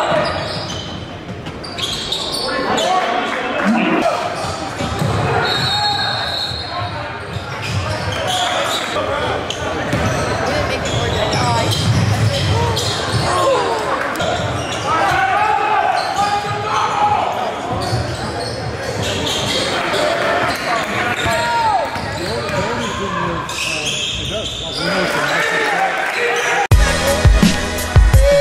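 Game sound in an echoing gym: a basketball dribbling and bouncing on a hardwood floor under the chatter of voices in the stands. Near the end, music with a beat comes in.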